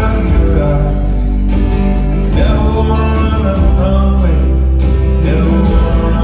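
Live band playing a pop song: strummed acoustic guitar, drums and electric bass, with a male lead vocal. It is loud and steady, heard from among the audience in the hall.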